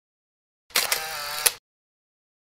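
Camera shutter sound effect: a sharp click, a short whirring tone and a second sharp click, all within about a second.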